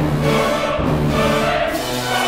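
Orchestral music with a choir singing: loud, sustained chords over a held low note, accented about once a second.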